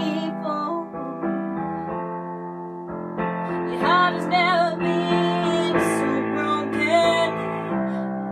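A woman singing over held piano chords, her voice coming in strongly about three seconds in, with vibrato on the long notes.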